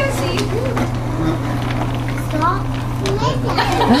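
Young children playing, with short rising squeals and calls scattered through, over a steady low hum.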